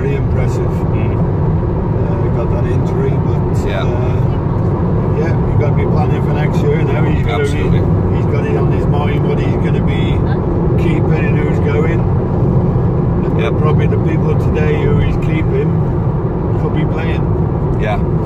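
Steady road and engine noise of a car driving at motorway speed, heard from inside the cabin, with conversation going on over it.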